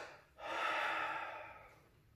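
A man's audible breath, a single unvoiced rush of air lasting about a second and fading out, taken in a pause between spoken phrases.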